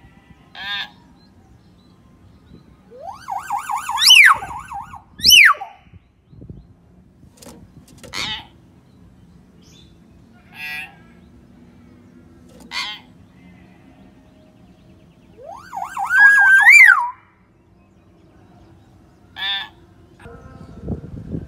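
Hill myna calling: short sharp calls every two or three seconds, and two loud warbling whistles that rise and then drop sharply, one a few seconds in and one about sixteen seconds in.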